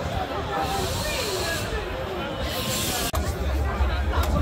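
Crowd babble: many people talking at once. A brief stretch of hiss rises about two and a half seconds in.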